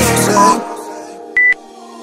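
Electronic dance music thins out to a quiet held backing about half a second in, and then a single short, high electronic beep sounds: a workout interval timer's countdown beep in the last seconds of an exercise.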